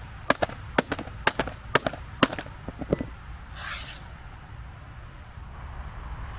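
A hammer striking the lid of an old white plastic laptop, about five sharp blows roughly half a second apart, then a few lighter knocks.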